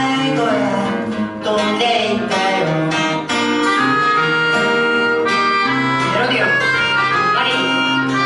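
Melodica (pianica) playing a melody of held notes over acoustic guitar accompaniment, an instrumental passage between sung verses.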